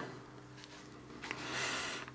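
Quiet room tone with a faint hiss that grows a little louder in the second half; no pump clicking is heard.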